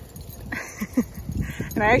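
A dog gives two short, rising whines about a second in, over low thuds of walking footsteps.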